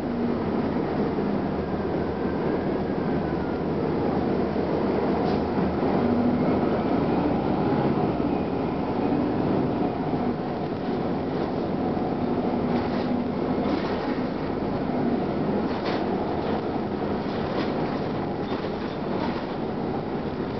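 Cabin noise of a 1999 Gillig Phantom transit bus under way: its Detroit Diesel Series 50 engine and Allison B400R transmission running under road noise, heard from inside. Short knocks and rattles come through more often in the last few seconds.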